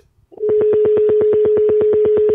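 A single steady telephone tone comes over the phone line as the call with the remote guest drops. It starts about a third of a second in after a brief silence and holds one buzzy pitch.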